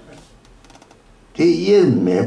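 Quiet room tone with a short run of faint rapid clicks, then a man's voice starts loudly about one and a half seconds in, its pitch rising and falling.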